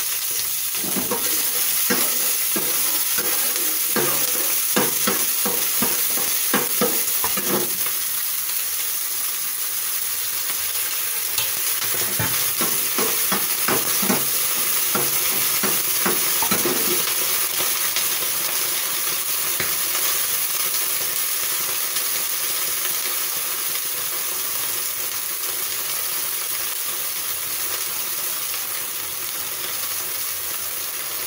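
Scallion pieces sizzling in hot oil in a nonstick frying pan, with a spatula stirring and scraping across the pan in two spells in the first half; after that the sizzle goes on steadily by itself.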